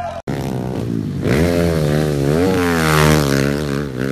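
Dirt bike engine revving hard under acceleration, its pitch climbing, dipping and climbing again, after a brief dropout just after the start.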